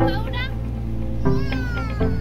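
Background music with a steady beat, and over it a young child's high-pitched squealing voice, twice, the second a long falling squeal.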